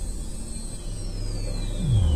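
Sci-fi film sound design: a steady low rumbling drone with a thin high tone that glides downward in the second half. A deep low swell builds right at the end.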